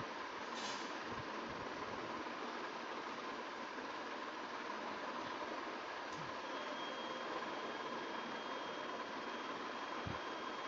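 Steady background hiss with a faint steady hum, broken by two faint short clicks, one about half a second in and one about six seconds in; a thin high whine comes in after about six and a half seconds.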